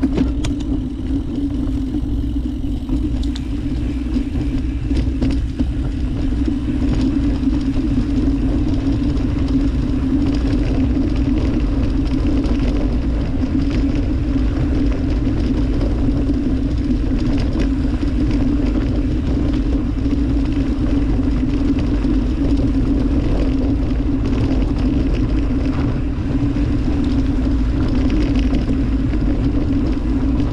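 Mountain bike riding down a dirt singletrack, heard from the bike: a steady rumble of tyres and wind on the microphone under a constant low buzz, with occasional light clicks and rattles over bumps.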